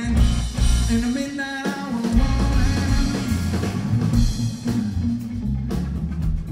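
Live rock trio of electric guitar, electric bass and drum kit playing continuously at full volume.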